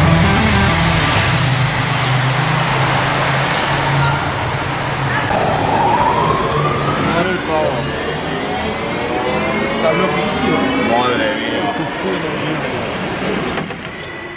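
Ford Puma Rally1 car's turbocharged four-cylinder engine running at low revs. About five seconds in it pulls away, its pitch rising in several repeated sweeps as it accelerates through the gears and drives off.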